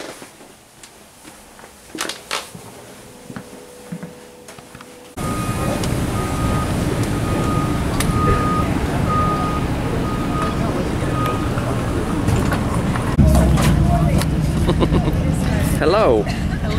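A quiet room with a few clicks, then a sudden change about five seconds in to loud outdoor noise with traffic and people's voices. A repeating electronic beep sounds about every 0.8 s for some six seconds over it.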